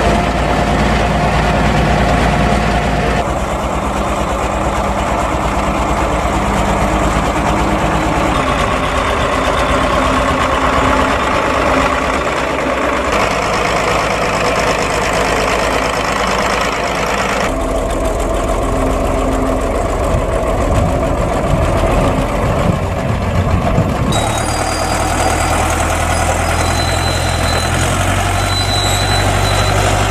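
Diesel farm tractors running under load while spreading and unloading silage: a Zetor tractor working a Holaras silage spreader, then a Deutz-Fahr DX 4.31 with its forage wagon unloading. The engine note changes suddenly several times, and steady high-pitched whines join in over the last few seconds.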